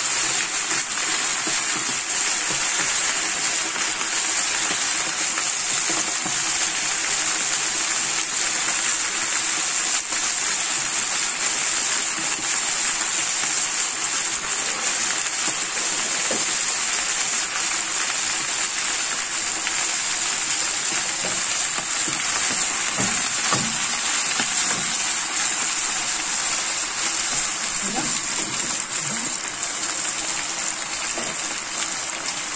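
Swiss chard leaves cooking down in a frying pan with garlic and oil, a steady sizzling hiss as the wet leaves give off their water.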